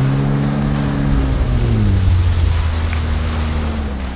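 Jet ski engine running at speed over the rush of water and spray along the hull; about one and a half seconds in the engine note drops and holds lower as the craft slows.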